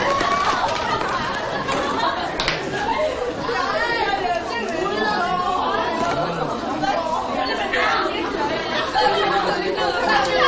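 A classroom full of students chatting over one another: a steady babble of overlapping voices.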